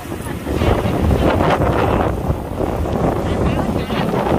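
Strong wind buffeting the microphone over rough sea, with waves breaking on a rocky shore.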